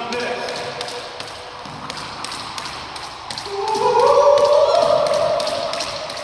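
Jump rope skipping on a wooden floor: a steady rhythm of light taps as the rope and feet strike the boards, about two to three a second.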